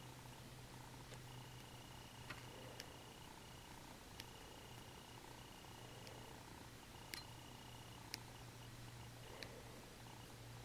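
Near silence: a low steady hum, with a few faint clicks as round-nose pliers grip and roll a wire tip into a loop.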